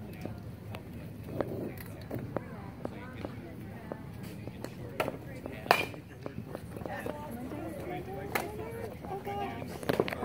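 Outdoor ballfield ambience: a background murmur of spectators' voices, broken by several sharp knocks, the loudest a little under six seconds in. Louder voices come in near the end.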